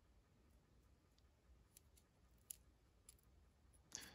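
Near silence, with a few faint clicks as the small plastic 1/6 scale FG-42 rifle accessory is handled.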